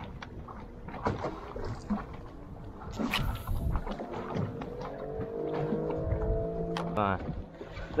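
A cast with the soda-can popper, then a spinning reel winding in: a whir that rises slightly and cuts off sharply about seven seconds in, with scattered clicks.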